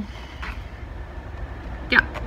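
Steady low rumble of outdoor background noise, with a faint tick about half a second in.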